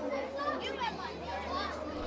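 Many children's voices overlapping at once, a crowd of children chattering and calling out as they play.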